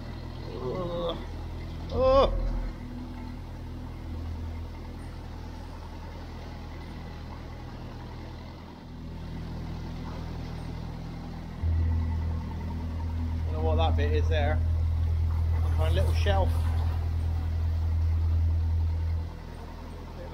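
Narrowboat engine running steadily under way inside a brick canal tunnel, a low drone that grows louder from about twelve seconds in and drops back near the end.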